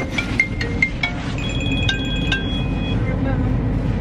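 Car engine idling, heard as a steady low rumble inside the cabin, with a run of short high electronic tones followed by several longer held high tones in the first three seconds.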